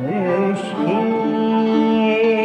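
A Turkish classical vocal piece, an Acem nakış beste, sung with instrumental accompaniment and transposed to bolahenk pitch. The melody slides up into a note, steps up about a second in, and holds that note with a slight waver.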